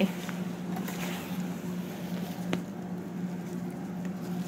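A steady low hum of room tone, with a single faint click about two and a half seconds in.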